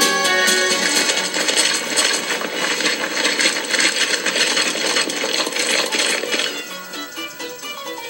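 Storybook app soundtrack: music under a dense metallic clattering and jingling sound effect that starts about half a second in and lasts about six seconds, then quieter plucked-string music.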